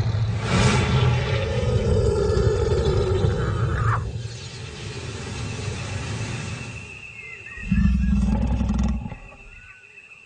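Lion roaring: a long, loud, deep roar in the first four seconds that breaks off abruptly, then a shorter deep call about eight seconds in.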